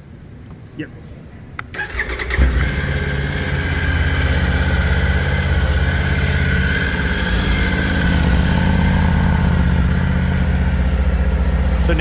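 2024 Triumph Tiger 900's three-cylinder engine started on the button, catching about two seconds in and settling into a steady idle.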